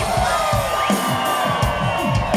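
Live rock band playing a steady groove, a regular drum beat under held guitar and keyboard notes, with the crowd cheering and whooping over it.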